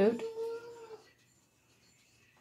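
A faint, high, drawn-out whine lasting under a second, fading out, then near quiet.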